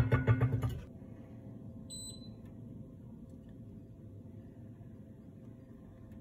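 Heavy enamelled cast-iron lid clattering and rattling as it settles onto the pot, dying away within the first second. About two seconds in comes a single short electronic beep from the glass hob's touch controls, over a faint steady hum.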